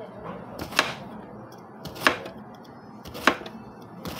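A knife slicing through a peeled patola (ridged luffa gourd) and striking the cutting board: three sharp knocks about one and a quarter seconds apart.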